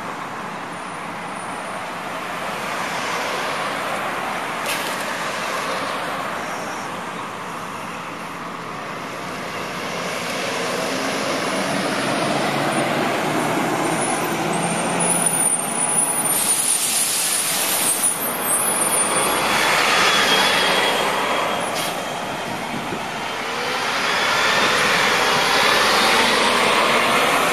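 City transit buses pulling out and driving past, their engine and tyre noise swelling and fading as each one goes by, loudest near the end as a bus passes close.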